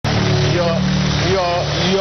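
A voice over a steady low hum.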